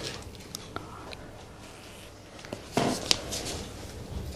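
Sheets of paper being handled and rustled, with a few small clicks and one short, louder rustle just under three seconds in.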